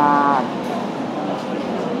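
A speaker's voice holding one drawn-out filler sound for about half a second, falling slightly at the end, followed by the steady murmur of a crowded indoor hall.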